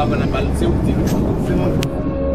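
Indistinct voices over a steady low rumble, with one sharp click near the end.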